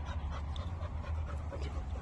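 A dog panting close by, in short quick breaths, over a steady low rumble.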